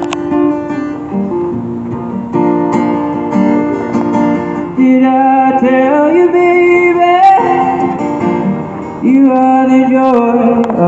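Acoustic guitar played live in a folk song, with the notes changing throughout and some pitch slides in the middle and near the end.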